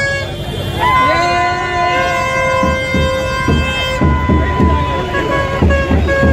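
Several horns sounded in long, overlapping steady blasts on different notes, one sliding up onto its note about a second in and held until near the end, over the shouting of a crowd.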